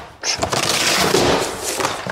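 Cardboard shipping box being cut along its edge with a multi-tool blade and torn open. A loud crackling rip of cardboard begins shortly after the start and lasts about a second and a half.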